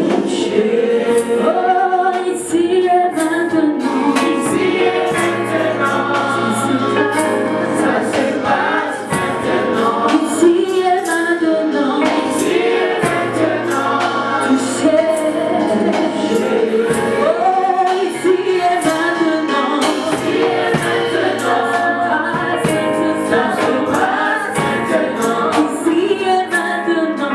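Gospel worship song sung in harmony by a small group of male and female voices, with keyboard accompaniment.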